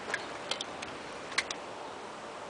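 A few short, sharp clicks at irregular spacing over a steady background hiss, the loudest about one and a half seconds in.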